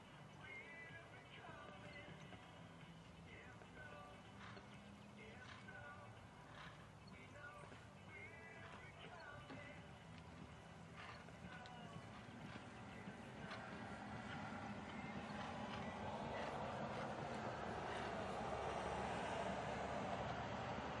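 Faint background music with the muffled hoofbeats of a show-jumping horse cantering on sand footing. A steady noise swells over the last several seconds.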